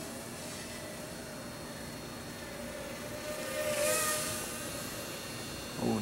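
Cheerson CX-30 mini quadcopter's motors whining over a steady hiss. The whine wavers in pitch and swells louder about four seconds in.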